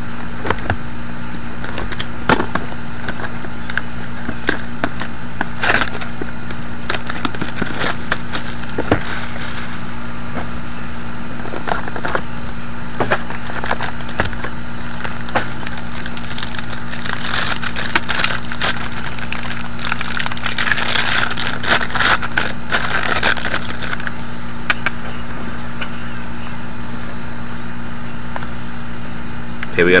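Foil pack wrapper crinkling and crackling, with clicks of the cardboard pack and cards being handled as a sealed hockey card pack is opened. The longest bout of crinkling comes a little past the middle, over a steady background hum.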